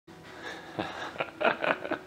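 A person's voice in a few short, indistinct bursts.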